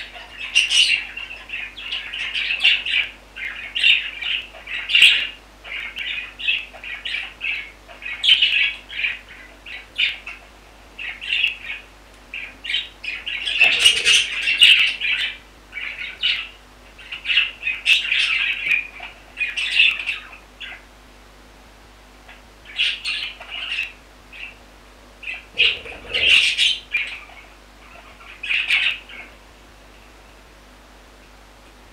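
Budgerigars chirping and chattering in quick runs of short, high calls, with brief pauses and two louder flurries, about a third and seven-eighths of the way through.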